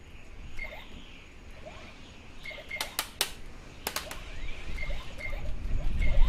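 Faint, short, bird-like chirps recurring every second or so, with a cluster of sharp clicks about three to four seconds in.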